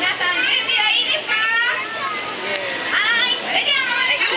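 Speech: an MC talking into a hand microphone, with children's voices around, including a brief high-pitched call about a second and a half in.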